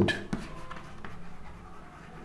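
Chalk writing on a chalkboard: an underline stroke and then a handwritten word, heard as a run of short, faint strokes.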